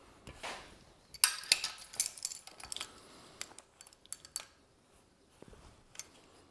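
A steel chain clinking and rattling against steel pipe as it is wrapped around the pipe and set in place, a quick run of light metallic clicks and jingles from about a second in until a little past the middle.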